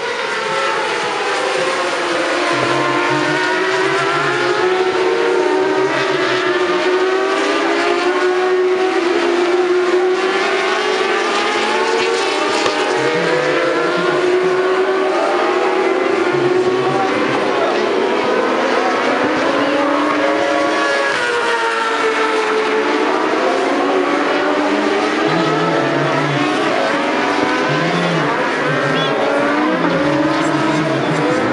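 A pack of 600 cc supersport racing motorcycles running hard around the circuit, several engines heard at once. Their pitch rises and falls as the riders change gear and pass by.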